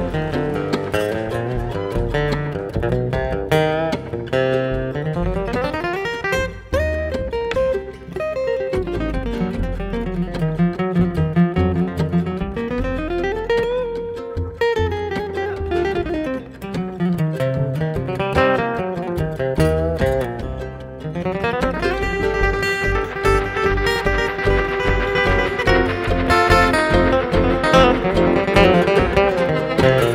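Bluegrass band playing an instrumental break, with a flatpicked acoustic guitar lead over upright bass and rhythm. In the middle, notes slide up and down, and from about two-thirds in the accompaniment grows fuller and more steadily pulsed.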